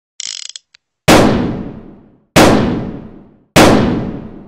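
A gun being cocked with a short mechanical clatter, then three loud gunshots about 1.2 s apart, each ringing out and dying away over about a second.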